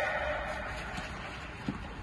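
A voice's echo dies away in a large indoor tennis hall, leaving faint, even room noise with two light knocks about a second apart.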